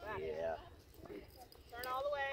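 A few sharp pops of tennis balls being struck and bouncing on a hard court during ball-feeding practice, between two short bursts of faint voices.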